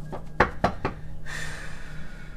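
A deck of oracle cards being handled and shuffled over a wooden table: four sharp knocks in the first second, then a longer rustle of cards.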